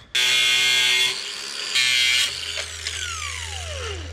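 Handheld electric cutting tool cutting the excess off the battery tie-down's threaded J-hook rods. It starts suddenly and runs loud for about a second, eases, runs loud again briefly about two seconds in, then winds down with a falling whine toward the end.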